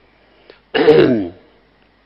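A man clears his throat once, close to the microphone, in a short voiced burst lasting about half a second, starting just under a second in.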